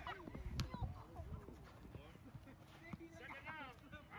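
Faint, distant voices of players calling out across an open field, with one sharp click about half a second in.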